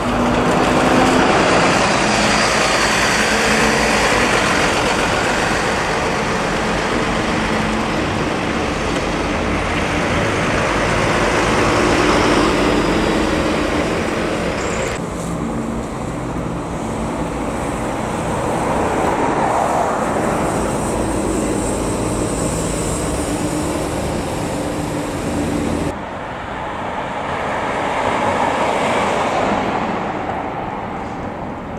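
City street traffic: buses and cars driving past, with steady engine hum and road noise. The sound changes abruptly twice, about halfway through and again near the end.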